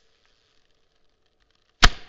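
Faint room hiss and hum, then a single sudden, loud, sharp bang near the end, ringing off briefly.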